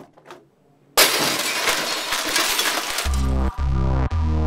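A sudden, loud burst of noise as an editing sound effect about a second in, lasting about two seconds, then electronic music with deep, steady bass notes begins about three seconds in.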